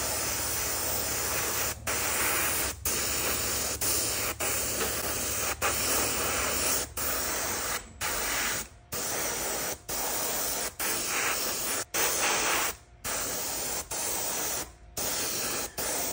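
Airbrush spraying thinned black lacquer: a steady hiss of air and paint in short bursts, broken by brief gaps about once a second.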